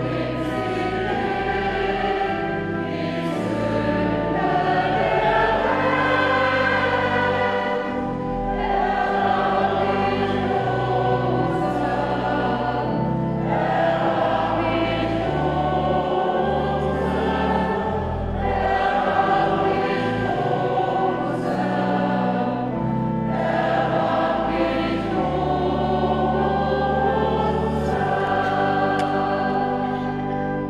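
Mixed church choir singing a sacred piece in several voices, accompanied by pipe organ holding steady bass notes that change in blocks under the sustained sung lines.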